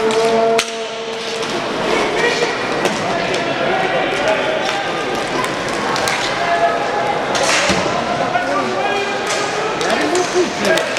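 Arena crowd chatter and players' calls echoing in a large hall, with scattered sharp clacks of sticks and puck on the inline hockey court. The sound drops suddenly about half a second in.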